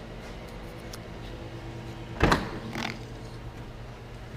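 2014 Cadillac XTS trunk lid being opened: one sharp clunk of the latch releasing about two seconds in, then a few softer knocks, over a steady low hum.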